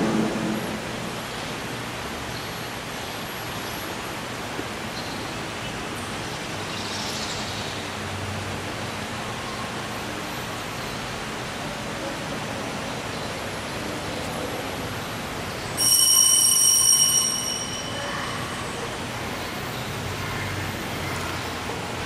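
Steady, even background hiss in a quiet church. About sixteen seconds in, a high ringing with several bright tones breaks in suddenly, lasts about a second and a half, then stops.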